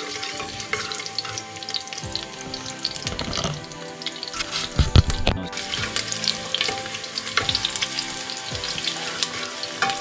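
Chopped ginger and garlic sizzling and crackling in hot ghee and oil in a pressure cooker, stirred with a wooden spatula, with a thump about halfway through.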